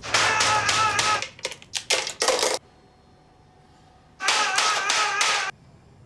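A man crying out without words, a long cry and then another about four seconds in, with short sharp sounds between them.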